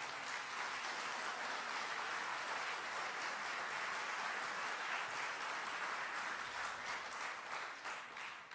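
Audience applauding steadily, beginning to die down near the end.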